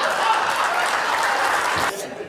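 Audience applauding and laughing, a dense steady clapping that cuts off suddenly just before the end.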